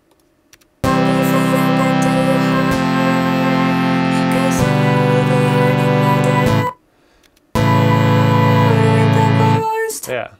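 Playback of a vocal line re-pitched in Cubase to follow the chord track, sung over sustained chords that change about every two seconds, with a brief break a little before the last chord. The result sounds musically off: it doesn't really sound nice.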